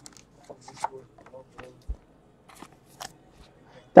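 Faint, scattered clicks and rustles of trading cards and packaging being handled on a table, with a soft low thump a little under two seconds in.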